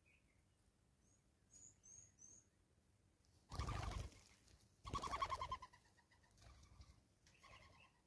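Faint, high, thin chirps from blue waxbills a second or two in, then a dove cooing: two louder rolling coos around the middle and a weaker one near the end.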